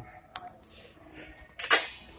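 Handling noises from bicycles being moved on a store rack: a sharp click about a third of a second in, then a short, loud rattling clatter near the end.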